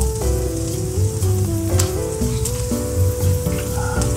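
Marinated chicken sizzling and crackling on a charcoal grill grate as it is turned with tongs, under background music with a stepping melody and a low beat.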